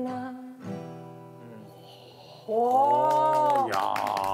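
Acoustic guitar and a female voice close out a ballad: the last sung note stops just after the start, and a final strummed chord rings and fades. About two and a half seconds in comes a loud drawn-out voice, and clapping starts just before the end.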